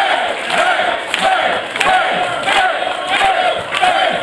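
A man shouting in short, repeated vocal phrases through a microphone and PA, echoing in a large hall, over the noise of a crowd.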